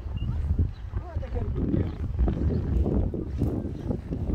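A dromedary camel grumbling: a low, rough, pulsing rumble for about two seconds in the middle.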